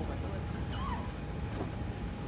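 A brief, high, meow-like vocal sound from a person just under a second in, over a steady low rumbling noise.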